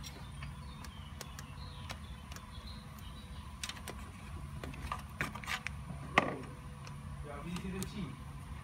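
Light clicks and taps from a clear plastic bleed hose being handled on the clutch slave cylinder, with one sharper click about six seconds in, over a steady low hum.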